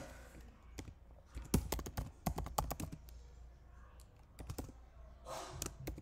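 Typing on a computer keyboard: irregular runs of key clicks, densest between about one and a half and three seconds in, with a short breath near the end.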